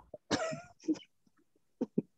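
A man's voice in short, breathy bursts: one about a third of a second in, a brief one near the one-second mark, then a pause and two quick bursts near the end.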